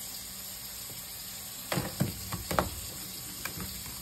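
Curry sauce simmering in a stainless steel frying pan with a steady sizzle. About halfway through, a few sharp knocks and splashes as pieces of frozen snow crab are dropped into the sauce.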